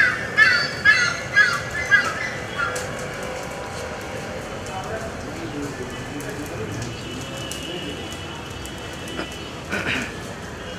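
A crow cawing, about six quick calls roughly half a second apart in the first three seconds.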